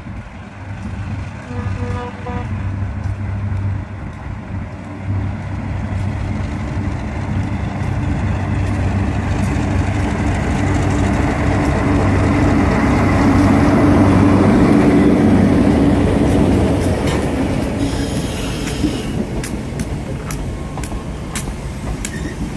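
A consist of diesel locomotives approaching and passing close by, their engines running with a steady low drone that grows to its loudest about two thirds of the way in. As the trailing units go by, the wheels click sharply over the rail joints.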